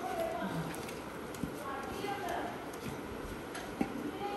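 Hands mixing and squeezing crumbly flour dough in a stainless-steel bowl, with soft irregular knocks of hand and dough against the bowl. There is a sharper tap about a second and a half in and another just before the end.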